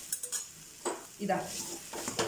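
A steel tumbler pressing, scraping and knocking against shredded porotta in an aluminium kadai while the food fries. There are a few sharp knocks near the start and another just before the middle.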